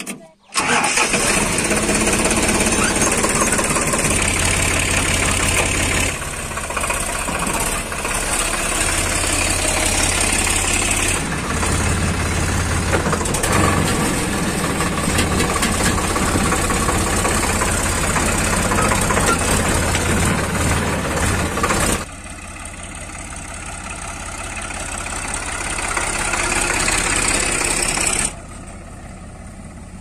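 Sonalika DI 42 RX tractor's diesel engine starting on the key, catching suddenly about half a second in, then running loud and steady with a few changes in engine speed as the tractor drives. About 22 seconds in it becomes quieter and slowly grows louder, then drops abruptly near the end.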